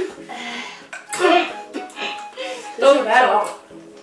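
Boys' voices making short unworded sounds, twice, over background music with held notes.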